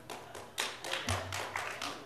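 A run of soft, irregular taps, several a second, starting about half a second in, with a low thud about a second in.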